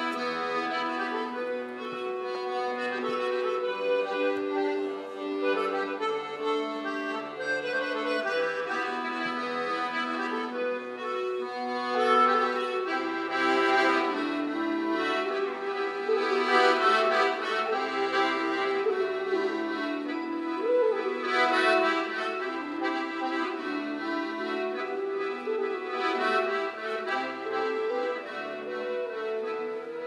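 Organetto (diatonic button accordion) playing an Italian folk melody in held, reedy notes over separate low bass notes.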